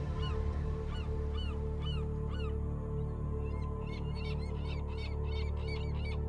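Birds calling over and over in short, arched calls, at first about twice a second and then faster and overlapping from about halfway in, over a steady low droning music bed.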